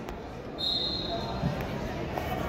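Gym ambience during a wrestling bout: background voices and dull thuds of wrestlers' feet on the mat. A steady high-pitched tone starts about half a second in and fades away.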